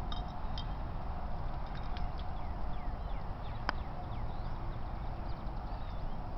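Golf putter striking a ball on the green: a few short clicks, the sharpest about halfway through, over a low steady rumble of wind on the microphone.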